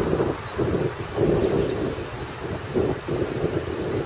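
Wind buffeting the microphone in irregular gusts, over the steady rushing spray of a park fountain's water jets.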